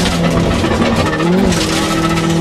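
Toyota Corolla AE86 rally car's twin-cam four-cylinder engine running hard at high revs, heard from inside the cabin over road and tyre noise. The engine note holds steady, wavers briefly about a second and a half in, then settles at a new pitch.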